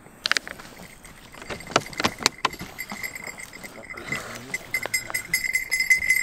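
Campfire crackling with several sharp pops, with the movement of a shepherd settling down on the ground in a heavy sheepskin cloak. A faint steady high whine runs beneath.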